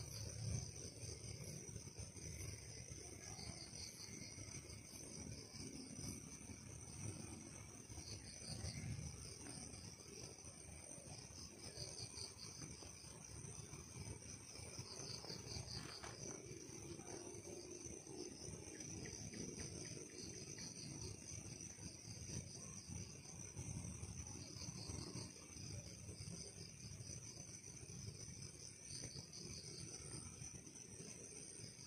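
Faint chorus of night insects, crickets among them: steady high chirring with trilled pulses every few seconds, over a low, uneven rumble.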